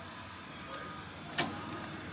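Steady background hum of a busy exhibition hall with a single sharp click about one and a half seconds in.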